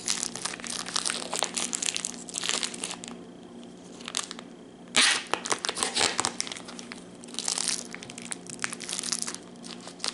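Clear plastic wrapper of a salami stick crinkling and tearing as a knife cuts it open, in irregular bursts with a quieter lull before a sharp loud burst about halfway through.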